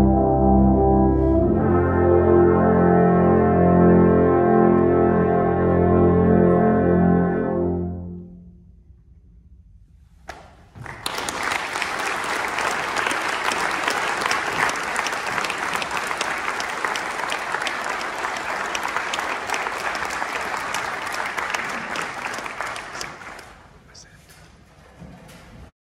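A brass choir of horns, trumpets, trombones, euphoniums and tubas holds a final chord, which shifts once about a second and a half in and dies away at about eight seconds. After a couple of seconds of quiet, the audience applauds steadily, and the applause tails off near the end.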